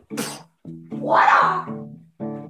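Guitar and bass riff in short, repeated plucked notes. Over it comes a short hissy burst just after the start, then a loud, drawn-out shrill yell about a second in, like a Bruce Lee-style cat-like screech.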